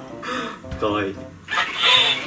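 Short bursts of squawky, high-pitched vocal sounds, twice, over background music.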